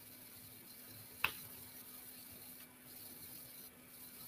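One sharp snip of scissors cutting through rattail satin cord, about a second in; otherwise quiet, with a faint steady hum.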